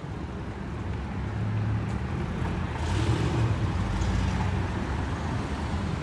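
A motor vehicle passing on the street over low city traffic rumble. It grows louder to its loudest about three seconds in, then fades.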